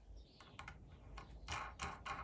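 Faint, scattered metallic clicks and light scraping from a steel nut being spun by hand onto the threaded bolt of a flap-disc mandrel, the clicks coming closer together in the second half.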